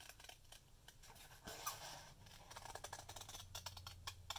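Scissors cutting paper: a run of faint, irregular snips as a paper cutout is trimmed.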